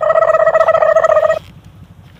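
Bag zipper pulled open in one quick, even stroke, giving a loud buzzing rasp that starts abruptly and cuts off about a second and a half in.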